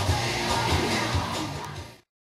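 Background dance music with a steady beat, fading out at the end.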